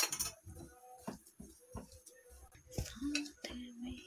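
A hand kneading damp gram-flour dough in a glass bowl: quiet squishing and rubbing, with scattered light clicks as fingers and a bangle knock against the glass.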